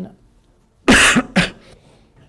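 A man's short fit of coughing about a second in, lasting around half a second and ending in a shorter final cough.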